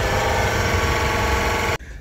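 A steady mechanical drone with a constant, even pitch, like a motor running. It cuts off suddenly near the end.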